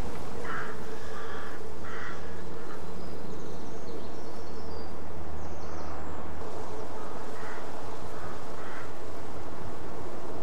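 Short bird calls outdoors: one about half a second in, one at two seconds, and a few more later, over a steady background hiss and low hum.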